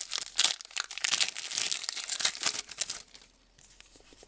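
A trading card pack's foil wrapper being torn open and crinkled by hand, a dense crackling that stops about three seconds in.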